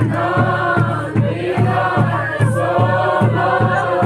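A group of voices singing together in unison over a steady drum beat of about three strokes a second.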